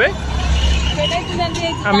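Street traffic: a motor vehicle's engine rumbling close by, strongest for about the first second, with faint voices in the background.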